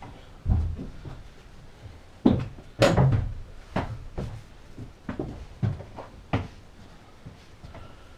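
Irregular wooden knocks and thumps of a timber bed-base frame bumping against a bus doorway and floor as it is carried in, the loudest knocks about two to three seconds in, then lighter knocks.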